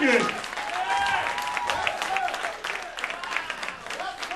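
Audience applauding with voices calling out over the clapping, dying down gradually.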